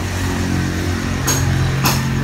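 An engine running steadily with a low hum, with two brief noises near the middle and near the end.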